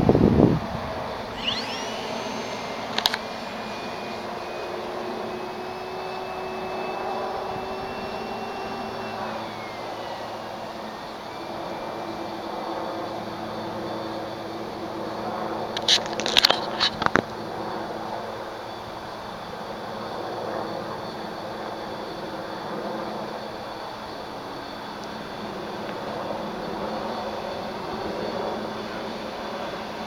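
Radio-controlled Carbon-Z aerobatic plane's electric motor and propeller whining steadily in flight, the pitch rising and falling slowly with throttle. A few sharp bumps cut in, one at the very start, one about three seconds in and a cluster around sixteen to seventeen seconds.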